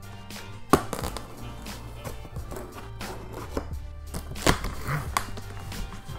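X-Acto blade cutting the tape and cardboard of a shipping box, a few sharp scrapes and knocks, the loudest about a second in, over background music.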